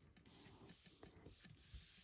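Near silence, with faint rustling of paper as hands press a cardstock pocket flat onto a paper page.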